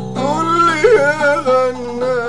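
A man singing an Arabic folk song over instrumental accompaniment, his voice holding long notes that bend in pitch.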